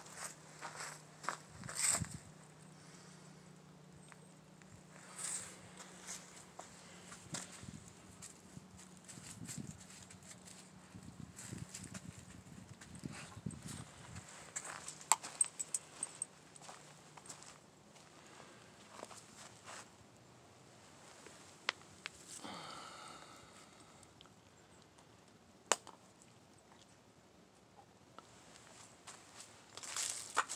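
Faint footsteps and scattered light clicks, with a low steady hum during the first half and a brief wavering sound about two-thirds of the way through.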